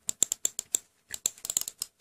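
Anker vertical mouse clicking rapidly, about ten sharp clicks a second in two runs with a short pause about a second in. Its button clicks are somewhat louder than usual.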